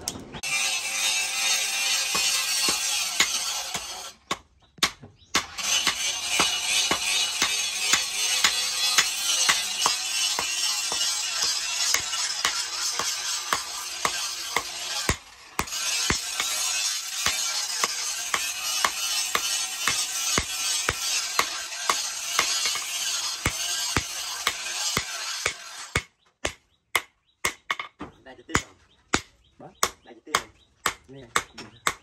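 Hand hammer striking a red-hot knife blade held on an anvil, in repeated sharp blows under steady background music. In the last few seconds the music stops and the hammer blows are heard alone, about two or three a second.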